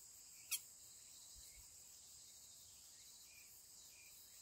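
Faint steady high-pitched chirring of insects, with one short sharp click about half a second in.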